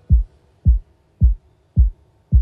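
Electronic kick drum playing alone on the beat: four deep thumps about half a second apart, each dropping in pitch, during a stripped-down break in an electro-pop track.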